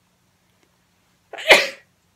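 A woman sneezes once about one and a half seconds in: a brief lead-in, then a single loud, short sneeze.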